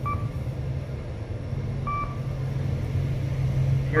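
Kone EcoDisc traction elevator car travelling upward with a steady low hum of the ride. Two short electronic beeps sound about two seconds apart, the car's floor-passing signal as it passes floors on the way up.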